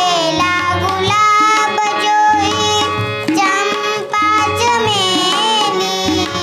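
A young girl singing a Hindi patriotic song, accompanied by a harmonium holding steady chords and a pair of tabla played in a running rhythm.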